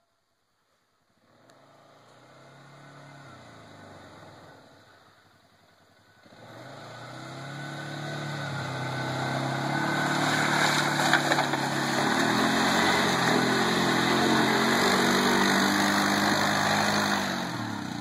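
ATV (quad bike) engine: after a short silence it is heard faintly, fades, then from about six seconds in grows steadily louder as the machine comes closer. It stays loud with the revs rising and falling as it is driven through the mud hole.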